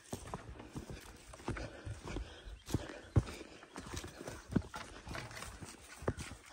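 Footsteps on a brushy dirt trail: irregular soft thuds and light crackles of dry vegetation, with a few sharper clicks.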